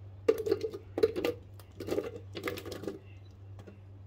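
Diced cucumber pieces tipped into an empty plastic blender jar, landing in several bunches of soft knocks and clicks over about three seconds, with a low steady hum underneath.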